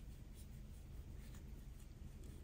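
Faint scratching and rubbing of a metal crochet hook pulling yarn through stitches, a few brief scrapes over a low room hum.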